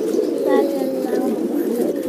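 A flock of domestic pigeons cooing continuously, many overlapping low calls.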